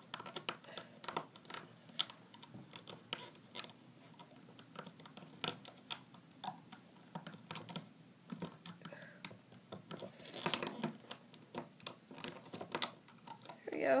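Irregular light clicks and taps of a loom hook and rubber bands against the plastic pegs of a Rainbow Loom as bands are hooked and looped.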